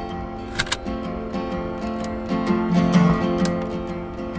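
Acoustic guitar playing a folk song's instrumental opening: strummed chords over a repeating low-note pattern, with two sharp percussive clicks a little over half a second in.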